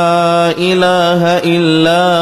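A man chanting an Arabic ruqyah supplication in slow, drawn-out recitation, holding long melodic notes with two brief breaks between syllables.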